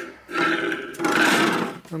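Chromed steel Harley horseshoe oil tank scraping across a steel workbench top as it is set down, in two long scrapes with a ringing metallic tone.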